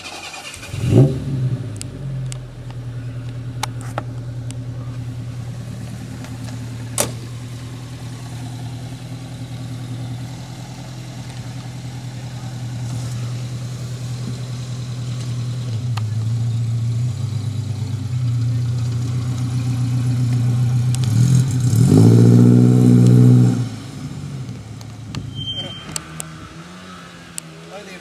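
A classic Mini's engine catches with a quick rev about a second in, then idles steadily. Near the end it is revved hard for a couple of seconds and then drops away.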